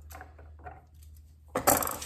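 Knipex Cobra pump pliers giving a short, sharp metallic clatter about one and a half seconds in, as the steel jaws come off a fitting held in a vise.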